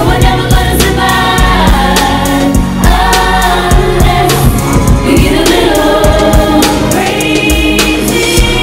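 Several female voices singing a pop/R&B song live in close harmony over a steady drum beat and heavy bass.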